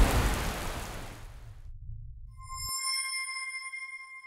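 A rain-and-thunder sound effect dying away over the first couple of seconds, its low rumble cutting off suddenly. Then a bright electronic chime of several steady high tones starts about halfway through and rings on.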